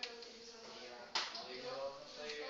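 Whiteboard marker at work on the board: one sharp tap about a second in as the marker strikes the board, amid the quieter sounds of drawing strokes.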